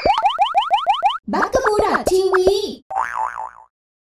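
Cartoon logo sting made of sound effects: a fast run of about eight rising boing-like sweeps, then a short burst of squeaky cartoon voice and effects, ending in a brief warbling tone.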